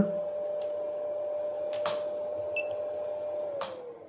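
A small fan heater runs as a 250-watt load on a modified-sine-wave inverter, giving a steady whine that slides down in pitch near the end as the fan slows. A couple of sharp clicks and a brief high beep come as the multimeter is switched over.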